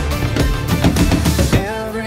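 Drum kit played over a backing track of a pop-country song: a quick run of hits around the drums that stops about a second and a half in, leaving the recorded song's sustained tones.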